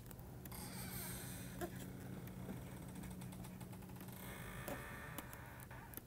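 Faint scratching and light taps of a stylus writing on a tablet screen, over a low steady hum.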